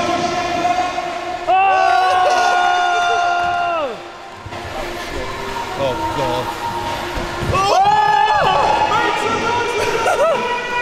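Spectators, mostly children, calling out in long drawn-out shouts that rise at the start and fall away at the end, cheering on a BMX rider. One call lasts about two seconds and a shorter one comes near the end, with scattered shorter shouts in between, and the sound rings in the large hall.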